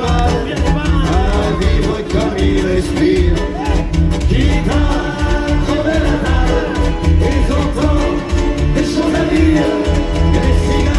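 Live band playing an instrumental passage: accordions and acoustic guitar over a steady, driving beat.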